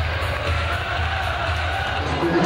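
Arena goal-celebration music with a steady bass beat, playing over crowd noise in an ice hockey rink after a goal.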